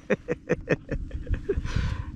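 A man chuckling quietly in a run of short, breathy bursts, with a breath drawn in near the end.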